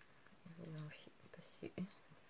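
A woman speaking softly, low and barely audible, with a short drawn-out sound about half a second in.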